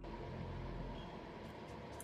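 Steady low background noise of a room recorded on a webcam microphone, a faint even hiss and hum, with a few faint clicks in the second half.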